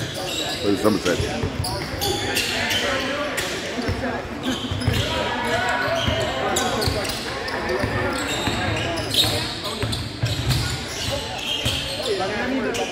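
A basketball being dribbled on a hardwood gym floor, a string of short sharp bounces, over background voices of players and spectators in a large gymnasium.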